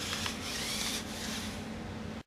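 Small electric drive motors of a six-wheel-drive robot whirring as it runs over carpet, with a faint whine that rises in pitch a little before the middle.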